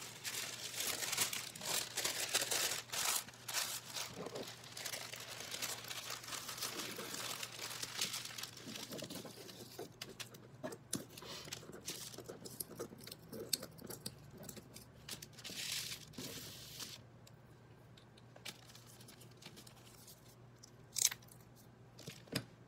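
Paper crinkling and rustling as a sheet of thin translucent paper and cut corrugated-cardboard triangles are handled and shuffled on a tabletop. The handling is busiest in the first half, then thins to a few scattered taps and brushes, with one more rustle about two-thirds through and a sharp tap near the end.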